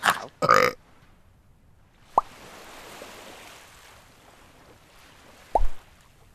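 A man's voice gives a last 'ow' and clears his throat. Then come two short cartoon plop sound effects, one about two seconds in and a louder one with a low thud near the end.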